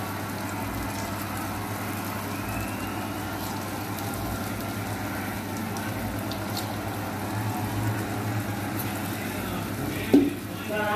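Spoonfuls of batter deep-frying in hot oil in a kadai: a steady sizzle and bubbling, with a low hum underneath.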